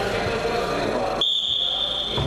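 Wrestling referee's whistle: one long steady high-pitched blast, starting a little over a second in, over the hall's background voices.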